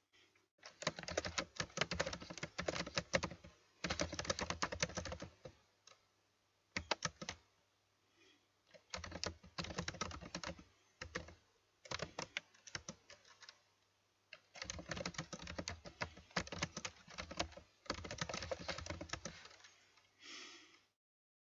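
Typing on a computer keyboard: runs of rapid keystrokes a second to several seconds long, broken by short pauses.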